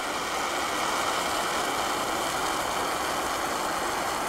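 Portable gas canister burner running with a steady, even hiss under a steel pot of water that is coming to the boil.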